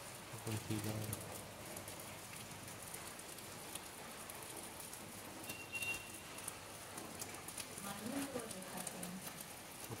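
Light, slackening rain: a soft, steady patter of drops.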